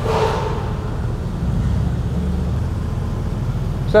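Mercedes-Benz SLR Stirling Moss's supercharged V8 running at low revs as the car creeps forward, a steady low rumble.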